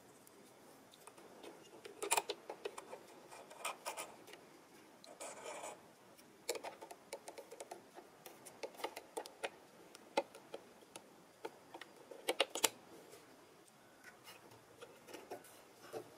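Quiet, scattered clicks, ticks and a brief rustle of plastic and metal as a bobbin is dropped into the drop-in bobbin case of a Singer Heavy Duty sewing machine and the clear plastic bobbin cover is fitted back over it.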